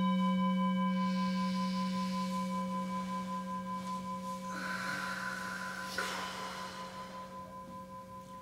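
Meditation bowl bell ringing out after a single strike, a strong low hum with several higher overtones fading slowly; it sounds the start of a zazen sitting. About halfway through, a brief rustle and a light knock.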